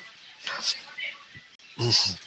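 A man's voice making a short wordless sung syllable near the end, after a few faint breathy hisses.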